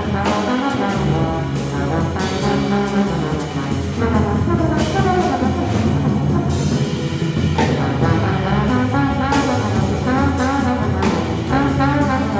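Live jazz combo playing a slow tune: a trombone plays the melody over a plucked upright bass and a drum kit with cymbals.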